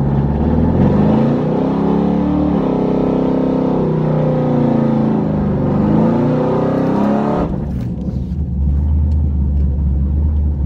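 Chevrolet Camaro's V8 engine revving hard and held at high revs for about seven seconds, its pitch climbing and wavering, over a rushing hiss, as in a burnout before a drag run. It then cuts back suddenly to a low, rumbling idle.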